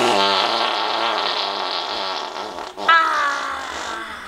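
A woman's loud, drawn-out cries of pain over an upset stomach: one long strained wail, then a second cry about three seconds in that falls in pitch.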